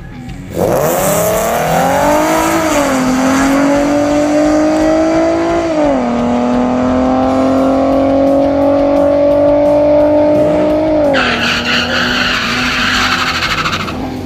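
Ford Mustang's 3.7-litre Cyclone V6 launching hard off the drag-strip line and pulling away down the track at full throttle. Its revs climb, then drop sharply at gear changes about 2.5 and 6 seconds in and again near 11 seconds. A rushing noise comes in near the end.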